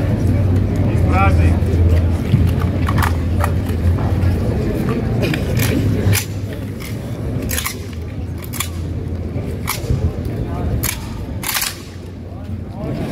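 Sharp clacks of hands and fittings striking rifles during a rifle-handling drill, about ten strikes at irregular intervals, the loudest near the end, over a low hum and a murmur of voices.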